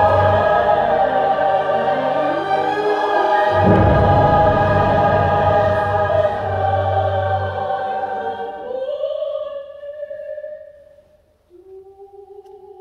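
Choir singing long-held chords over deep accompanying notes, fading away about ten seconds in; a single quieter held note begins near the end.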